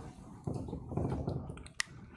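Faint scratching of a dry-erase marker writing a letter on a whiteboard, followed by a single sharp click near the end.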